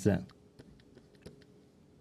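Faint, irregular taps and clicks of a pen tip on a writing surface as an equation is written out.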